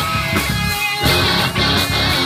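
Live rock band playing an instrumental passage: electric guitars, bass guitar and drum kit, with no vocals.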